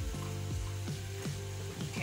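Steak and peppers sizzling in a frying pan, under background music with steady held tones.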